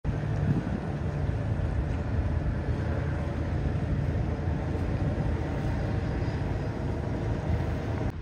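Flybridge motor yacht's engines running as it cruises slowly past, a steady low rumble.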